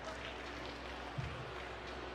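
Steady background murmur of an arena crowd, with one short low thud a little over a second in.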